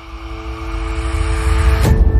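Sound design for a TV channel's logo ident: a low rumbling whoosh swelling steadily louder over two held tones, ending in a sharp hit near the end.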